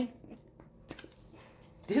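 A pause in a woman's talk: near silence with a few faint clicks in the middle, her speech breaking off at the start and resuming at the end.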